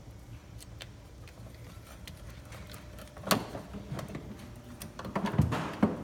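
Clicks and knocks of plastic wiring-harness connectors and dash parts being handled: faint ticks at first, a sharp click about three seconds in, then a cluster of knocks near the end.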